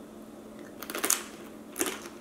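Crunchy homemade fried tortilla chip (totopo) being bitten and chewed: a few crisp crunches about a second in, and one more near the end.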